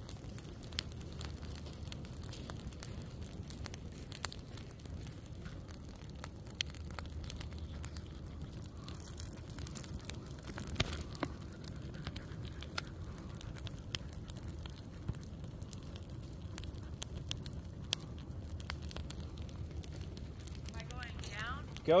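Pine-straw litter burning in a low line of flame on the ground, crackling with many small sharp pops over a steady low rumble.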